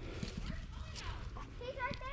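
Quiet outdoor background with a few faint, short clicks; a voice speaks briefly near the end.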